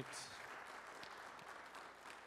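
Faint audience applause, many hands clapping steadily.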